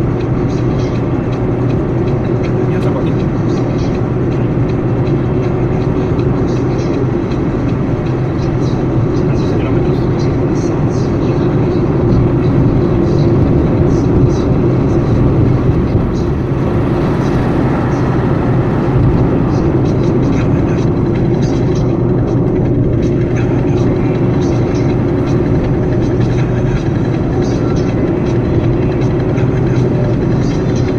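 Steady road and engine noise of a car cruising on a highway, heard from inside the cabin: a continuous low rumble and hum. It grows louder about halfway through as the car draws alongside and passes a coach bus.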